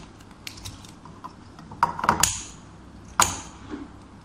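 Scissors snipping used magazine paper into small pieces: scattered sharp snips, the loudest about two seconds in and just after three seconds in.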